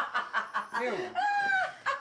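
A woman laughing loudly in rapid pulses, breaking into one long high-pitched squeal just past the middle.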